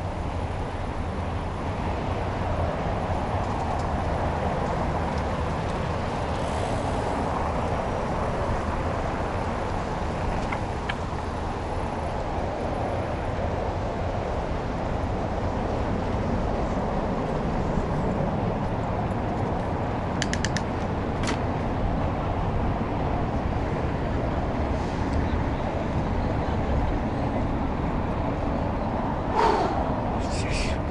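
Steady rushing wind noise on the microphone with tyre roll, from riding a bicycle along a paved path. A few quick clicks sound about twenty seconds in, and a short falling squeal comes near the end.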